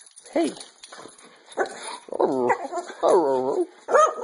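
Pet dog whining in several long, wavering, high cries in an excited greeting, with a person's short "hey" at the start.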